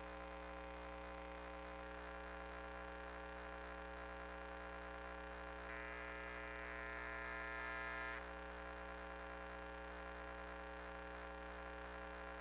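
Faint, steady electrical hum with many even tones on the audio of a sewer inspection camera system. About six seconds in, a higher whine joins for about two and a half seconds, growing slightly louder, then cuts off suddenly.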